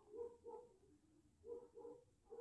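Faint dog barking: four short barks in two quick pairs, about a second apart, over a near-silent room.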